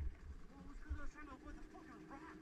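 Dirt bike engines idling quietly at a standstill, a steady low hum, with a faint voice about a second in.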